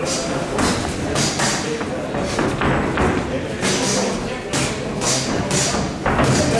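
Boxing gloves landing in quick, uneven succession, thudding on guards and bodies during an exchange of punches, with voices calling out from ringside.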